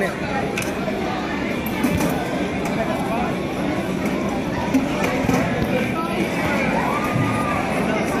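Steady babble of several people talking at once in a busy room, with a few light clicks.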